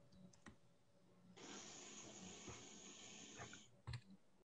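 Near silence: a faint hiss lasting about two seconds in the middle, with a few faint clicks around it.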